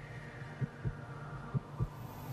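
Broadcast heartbeat sound effect: low thumps in pairs, about one pair a second, over a steady low hum. It is the suspense cue played while a run-out decision is on replay review.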